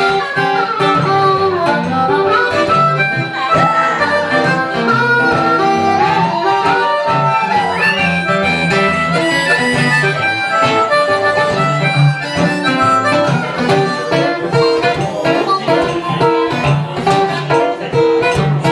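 Blues harmonica solo, played cupped around a microphone, with several notes bent up and down in pitch, over steady acoustic guitar accompaniment.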